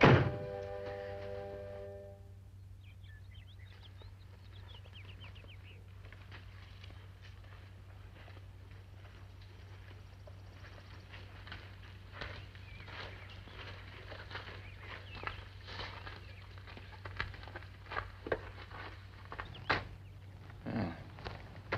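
A door shuts with a loud thunk under a held orchestral chord that ends about two seconds in. Then a quiet outdoor stretch follows, with a faint steady hum, a few seconds of faint chirping, and scattered light footsteps and clicks.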